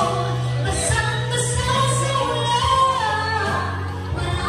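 A woman singing a song into a microphone over backing music.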